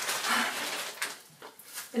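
Aerosol can of expanding foam hissing and sputtering as foam is squeezed out through its straw nozzle, louder in the first second.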